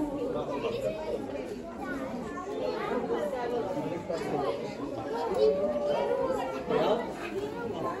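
Indistinct chatter of several people's voices, overlapping and continuous, with no single clear speaker.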